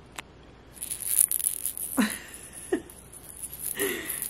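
The rattle of a Ryan & Rose Cutie Teether, a silicone bead baby teether, being shaken and handled as it comes out of its plastic pouch. A single click comes first, then from about a second in a fast, high patter and rustle.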